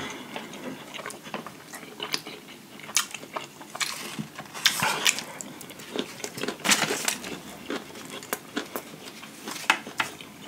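Close-miked chewing of hibachi steak, shrimp and fried rice: irregular wet mouth clicks and smacks, with now and then a light tap of a fork in the food.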